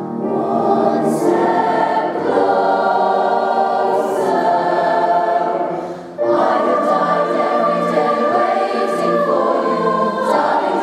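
Mixed youth choir singing a slow song in harmony. The singing dips briefly about six seconds in, then comes back in at once with a long held high note over the lower parts.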